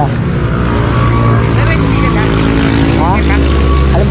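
Motorcycle engine idling steadily close by, with road traffic noise.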